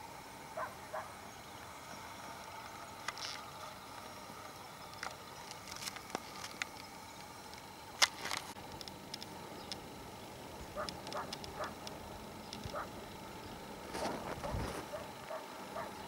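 Faint, scattered chirps of small birds perched in bare bushes. A single sharp click comes about halfway through, and a low thump comes near the end.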